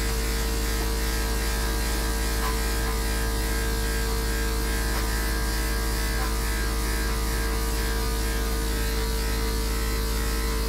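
Corded electric dog-grooming clipper running steadily as it trims the fur on a small dog's face, a constant even hum with no change in pitch.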